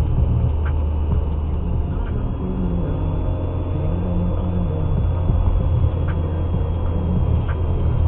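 Steady low rumble of a car's engine and tyres heard inside the cabin through a dashcam microphone while driving, with a few faint ticks.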